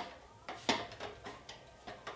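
A wooden home practice bar knocking and clicking several times under a gymnast's weight as she leans on it and presses her shoulders up over it. The loudest knock comes a little under a second in.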